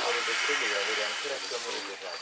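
A person's voice murmuring quietly, under a rustling hiss that starts sharply and fades away.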